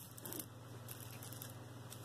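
Faint handling noise of a Trifari satin-gold beaded choker necklace being moved by hand on a velvet jewelry pad, with a soft tick about half a second in, over a steady low hum.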